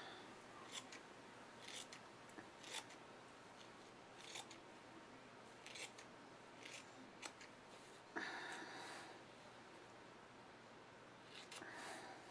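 Scissors snipping through polyester batting: faint, separate snips about once a second, with a brief louder noise about eight seconds in.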